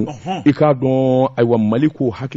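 Speech only: a man's voice talking, with one syllable drawn out level about a second in.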